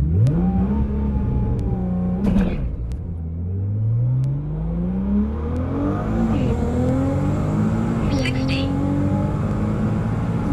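A 2009 Nissan GT-R's twin-turbo V6 launching hard and accelerating at full throttle down a drag strip, heard from inside the cabin. The revs climb through each gear, with upshifts about 2, 6 and 8 seconds in. The owner says the car's clutches are slipping a little.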